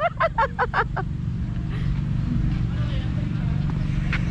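A person laughing in quick bursts for about the first second, then a steady low rumble of outdoor background noise.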